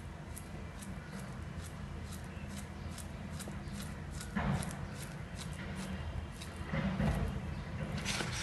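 Small kitchen knife slicing a peeled banana into thin rounds, a faint click with each cut, about three cuts a second.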